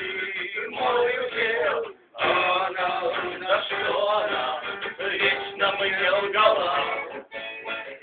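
Music: a man singing, with a guitar. The sound breaks off briefly about two seconds in.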